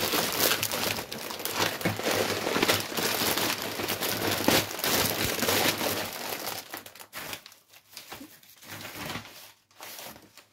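Crinkling and rustling of a paper bubble-lined mailer and plastic wrapping as a plastic-wrapped bundle of magazines is slid out of the envelope. It is busy for about the first six seconds, then thins out to scattered crackles.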